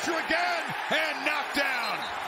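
Excited TV play-by-play commentary calling a football play: a male announcer's voice swinging up and down in pitch.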